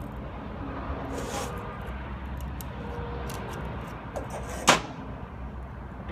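Small metallic clicks and handling as a snap ring is fitted with snap-ring pliers onto the worm drive shaft of a rod rotator, with one sharp, loud click a little under five seconds in. A steady low shop hum runs underneath.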